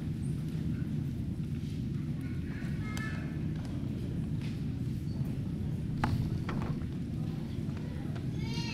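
Steady low rumble of a large gymnasium with faint murmuring and shuffling, and a sharp knock about six seconds in.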